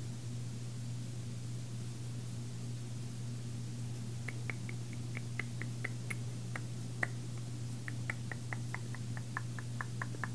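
Light clicks, a few per second and unevenly spaced, start about four seconds in as a Samsung Galaxy S3's touchscreen is tapped and swiped. A steady low hum runs underneath.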